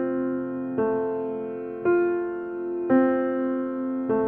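Piano played slowly, single notes of a broken chord struck about once a second, each ringing on and fading under the held sustain pedal.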